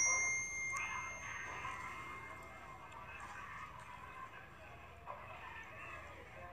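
A sharp click followed by a bright ringing ding that fades away over about two seconds, with faint voices murmuring underneath.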